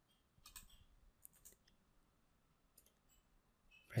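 Faint clicks of computer keyboard keys, a handful of separate keystrokes spread over about three seconds, as a menu number is typed and entered.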